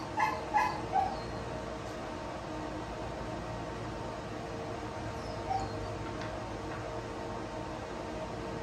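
A cat inside a pet drying cage gives three short mews in quick succession about a second in, and one more around the middle, over the steady hum of the cage's drying fan.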